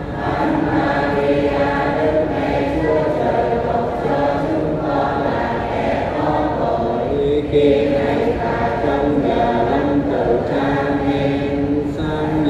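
Many voices chanting a Vietnamese Catholic prayer together in unison on long held notes, a steady sung recitation with no break.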